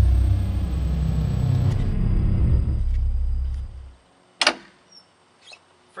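A deep low rumble in the soundtrack, the dying tail of the opening music, fading out over about four seconds. A single sharp click follows shortly after.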